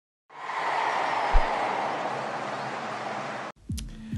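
Stadium crowd noise, a steady wash with one low thump about a second in, cut off abruptly near the end.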